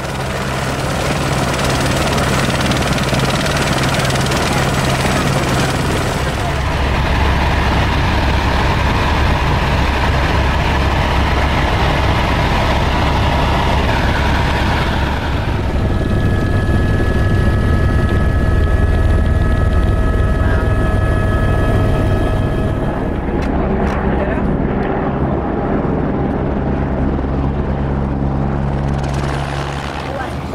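Tour helicopter's turbine engine and rotor running steadily. From about halfway it is heard from inside the cabin, where steady high tones sit over the engine. The sound drops away near the end.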